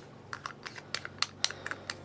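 A quick run of about a dozen light, irregular plastic clicks and taps as small ColourPop Super Shock eyeshadow pots and their plastic lids are handled.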